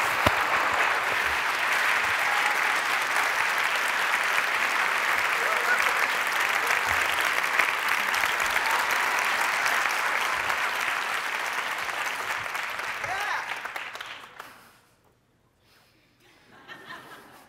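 Large audience applauding steadily for about fourteen seconds, then dying away to near silence.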